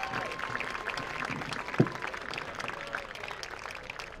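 Distant crowd applauding in the stands, the clapping thinning and fading away, with a single thump about halfway through.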